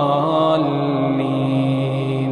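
A man's voice in chanted Quranic recitation holds one long note. The pitch drops slightly about half a second in and then stays steady.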